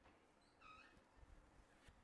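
Near silence: room tone, with one faint, brief high-pitched squeak about half a second in and a few faint ticks.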